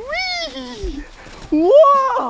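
Two drawn-out, high-pitched wordless vocal calls from a man playing in snow, each rising and then falling in pitch; the second starts about one and a half seconds in.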